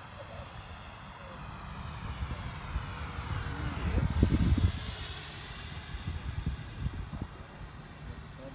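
Electric ducted fan of an RC jet whining during a fast close pass overhead. It grows louder to a peak about four seconds in, then falls slightly in pitch as the plane moves away.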